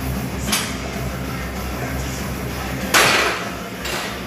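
Background music playing, with a sudden loud clank about three seconds in as the loaded barbell is set back into the rack, and a fainter knock about half a second in.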